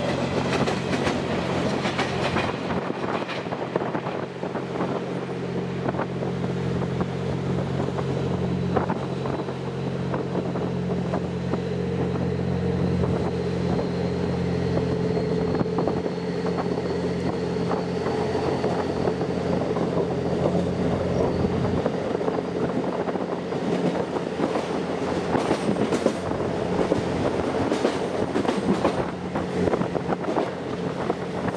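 Twilight Express Mizukaze (Kiha 87 series diesel-electric hybrid train) running along the track, heard from its open rear observation deck: a steady engine hum with wheel clicks over the rail joints. The hum weakens after about twenty seconds and the clicks come more often near the end.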